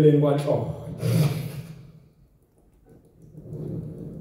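Speech only: a poet declaiming an isiZulu praise poem into a stage microphone, two drawn-out phrases in the first two seconds and then a pause.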